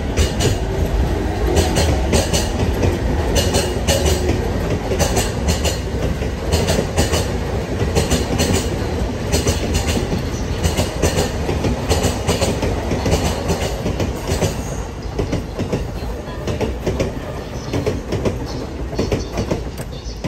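JR E217 series electric commuter train pulling out of the station and passing close by, a continuous rumble from the cars with sharp wheel clicks, often in close pairs, as the bogies cross rail joints. The clicks thin out near the end as the last car goes by.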